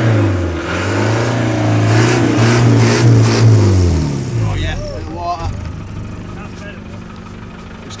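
Land Rover Defender's 200Tdi 2.5-litre four-cylinder turbodiesel revving hard, its pitch swinging up and down, for about four seconds, then dropping back to a quieter idle. The engine is running again after swallowing water in a deep wade, with its exhaust blowing steam.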